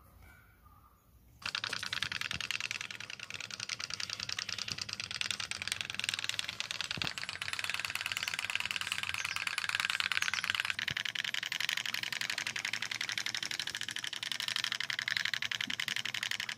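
Homemade candle-heated pop-pop boat made from a Coca-Cola can, puttering in a tub of water: a fast, steady rattle of pops that starts about a second and a half in.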